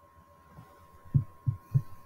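Three short, low thumps in quick succession about a second in, over a faint steady high-pitched electrical tone.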